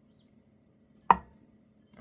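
One sharp knock against a glass mixing bowl about a second in, with a short ring, as fingertips work fat into flour in the bowl; otherwise very quiet.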